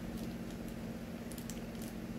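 Faint wet chewing sounds with a few small clicks as a mouthful of noodles is eaten, over a steady low hum.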